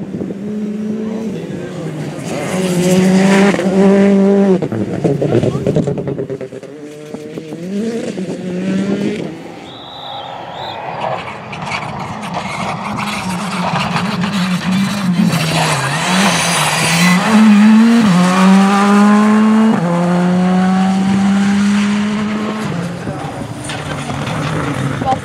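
R5-class rally cars with turbocharged four-cylinder engines driven flat out past the camera one after another. Each engine note climbs and drops back with gear changes, with a brief tyre squeal.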